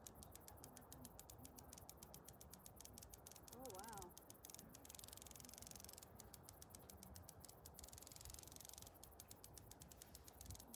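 Near silence with faint outdoor air. About three and a half seconds in comes one short, faint, wavering call lasting about half a second.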